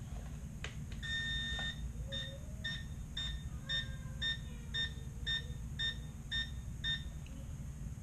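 Electronic beeps as a newly built Tiny Whoop micro drone powers up: one longer tone about a second in, then a steady series of short beeps, about two a second, for around five seconds.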